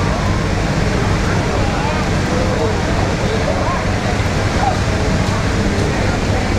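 Steady low drone of a river car ferry's engines, with a crowd of passengers talking in the background.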